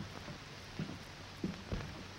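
A few soft footsteps on a floor, about two-thirds of a second apart, over the steady hiss and hum of an old optical film soundtrack.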